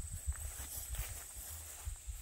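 Footsteps through grass, with a steady high-pitched drone of insects behind them.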